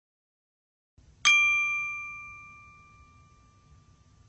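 A single bright, bell-like chime struck about a second in, ringing out and fading away over the next few seconds, as an intro sound effect.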